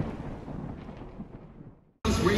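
A thunder-like rumbling boom sound effect, fading steadily and dying out just before the end.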